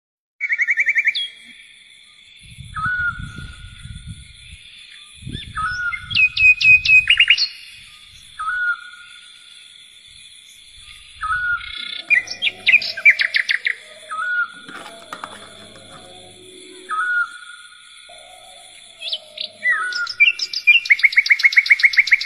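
Small birds chirping and calling: fast trills of rapid repeated notes, and a short whistled note that comes back every second or two, over a faint steady high tone.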